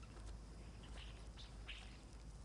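Faint birds chirping: a few short, high calls around the middle, over a low steady hum.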